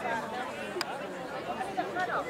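Spectators and players chattering, many voices overlapping with no single speaker standing out, and one sharp click a little under halfway through.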